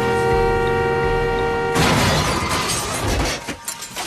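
A steam engine's whistle holding a steady chord cuts off about two seconds in as a loud crash breaks out, then dies away into scattered metallic clatters and clinks.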